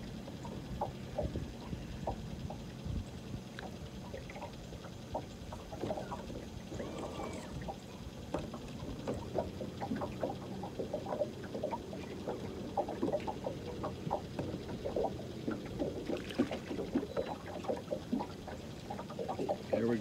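Quiet boat ambience: small irregular splashes and ticks of water lapping against a fishing boat's hull, over a faint steady low hum.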